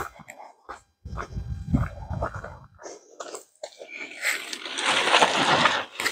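Polyester tent fabric rustling and flapping as a folded pop-up hub tent is shaken out and handled. There is a low rumbling stretch about a second in, and a longer, louder rustle over the last two seconds.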